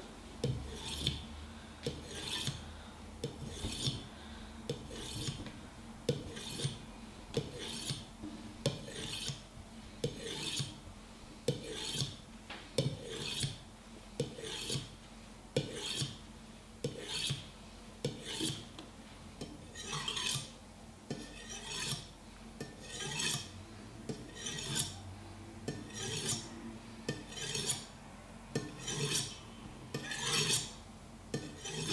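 Steel blade of a Kai Shun kitchen knife drawn again and again across the unglazed ceramic ring on the bottom of a mug. Each pass gives a short dry rasp, about three strokes every two seconds, as the steel grinds on the ceramic to put an edge back on a deliberately dulled blade.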